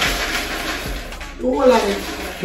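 A steady rushing noise for about the first second, then a person's voice.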